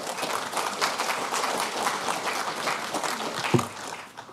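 Audience applauding in a large hall, the clapping thinning out near the end.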